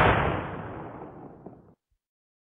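Cartoon explosion sound effect as a potato battery blows apart: a loud blast that dies away over about a second and a half, then cuts off abruptly.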